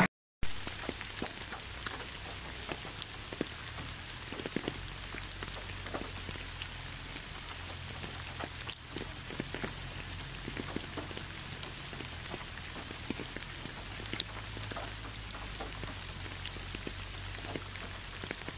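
Light rain falling on a surface: a steady hiss dotted with many small scattered drop ticks, over a faint low rumble.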